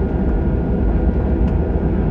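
Steady cabin noise of a Boeing 737-800 airliner taxiing after landing: a low engine and air-system rumble with a faint steady high whine.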